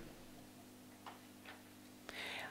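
Near silence: room tone with a faint steady low hum and two faint ticks, about a second and a second and a half in.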